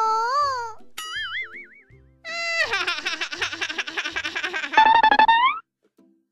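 A cartoon 'boing' sound effect about a second in, then a child's cartoon voice laughing hard for about three seconds, 'ah, ah, ah, ah', ending in a rising 'aiii'.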